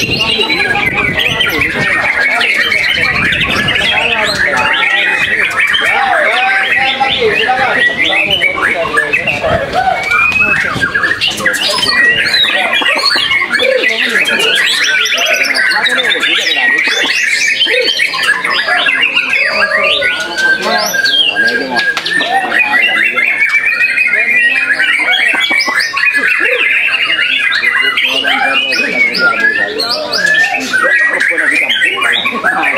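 White-rumped shama (murai batu), a ten-month-old male, singing a fast, varied stream of whistles, trills and chirps without a break, with other birdsong overlapping it.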